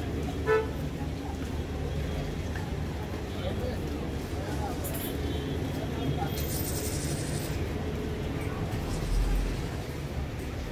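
Busy street ambience: a steady traffic rumble with passers-by talking, and a short vehicle horn toot about half a second in.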